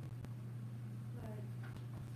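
A steady low room hum, with faint, indistinct voices murmuring about a second in and a single light click near the start.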